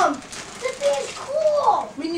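People's voices making drawn-out, wordless exclamations that slide up and down in pitch, as at the unwrapping of a present.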